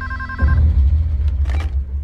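An office telephone ringing with a warbling electronic tone, cut off about half a second in, followed by a deep low rumble.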